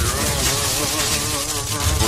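Lightning sound effect: a dense electric crackle and buzz with a wavering pitched tone running through it, over a steady low rumble.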